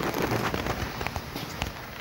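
Irregular sharp clicks and crackling over a low rumbling background.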